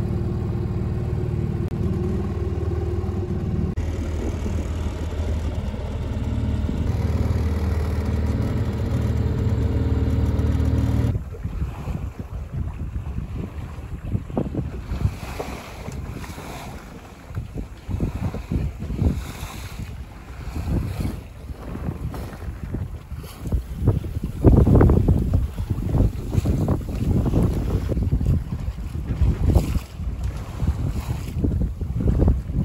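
A small sailboat's outboard motor runs steadily at a constant pitch for the first eleven seconds or so, then cuts off abruptly. After that, wind buffets the microphone and waves splash irregularly against the hull of a San Juan 21 under sail, with the loudest gusts and splashes near the end.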